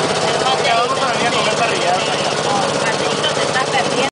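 A small boat's motor running steadily under way, with indistinct voices over it.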